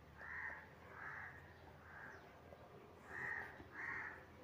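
Faint bird calls in the background: about five short, harsh calls spread unevenly over four seconds.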